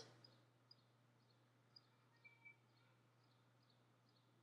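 Near silence: faint steady low hum of room tone, with very faint short high chirps repeating about twice a second.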